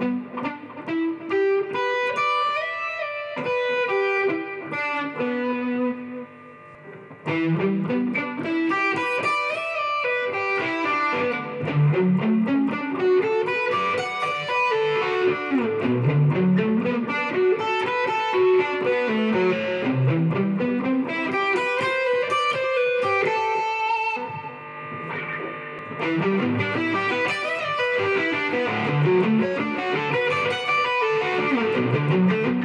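Stratocaster-style electric guitar playing fast arpeggio runs that climb and fall over Em, D, Bm and C chords, the notes cut short in staccato. There is a short break about seven seconds in.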